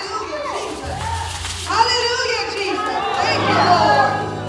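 Church worship music: voices singing over a live band, with a steady bass line underneath that comes in about a second in and grows stronger near the end.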